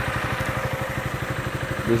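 2006 Yamaha Morphous scooter's fuel-injected single-cylinder engine idling, with a steady, rapid low pulse.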